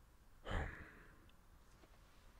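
A man's short sigh, one breath pushed out through the mouth about half a second in, over faint room tone.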